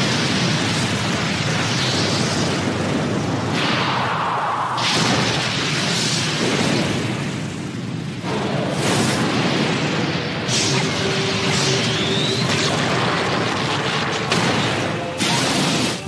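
Anime fight sound effects: a continuous loud blast of noise from colliding punches, with several sharper booming impacts spread through it.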